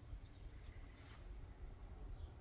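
Quiet outdoor garden ambience, with a low rumble on the microphone and no distinct event.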